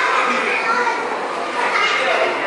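Indistinct voices chattering and overlapping, with no clear words.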